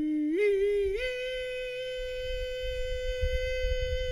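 A voice holding a long sung note for a puppet. It climbs in two steps in the first second, then holds one steady high pitch for about three seconds.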